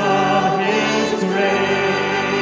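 Congregation singing a hymn together, many voices in unison.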